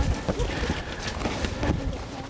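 Irregular footsteps and scuffs of people climbing a rocky, leaf-covered trail.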